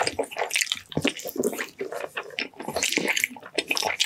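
Close-miked wet chewing and lip-smacking of braised ox foot, the sticky, gelatinous skin eaten by hand, in dense irregular squelches and clicks.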